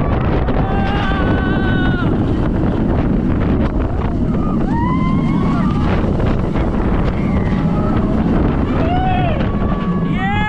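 Heavy wind rushing over a rider-held camera's microphone as the B&M hyper coaster Mako runs at speed. Riders' yells and shrieks rise over it three times.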